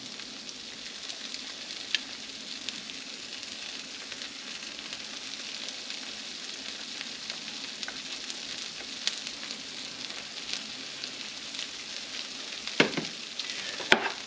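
Shredded mozzarella sizzling on the hot plates of Dash mini waffle makers: a steady hiss dotted with small crackles. A light knock sounds about two seconds in and again near the end.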